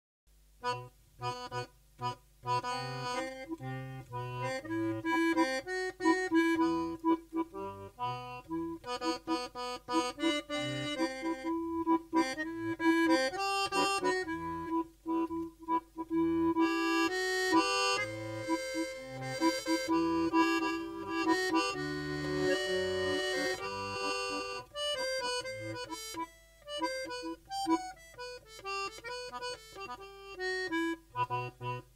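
Accordion playing an instrumental forró introduction: a melody over a pulsing bass line, with a stretch of fuller, held chords about two-thirds of the way through.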